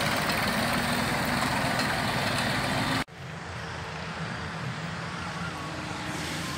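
Diesel tractor engine running steadily close by; about three seconds in the sound cuts off abruptly and gives way to a quieter, more distant engine running under load as a tractor hauls a loaded sugarcane trolley.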